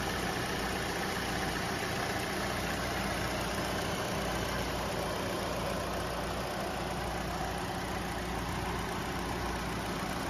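Kia Forte's DOHC 16-valve four-cylinder engine idling steadily, heard with the hood open.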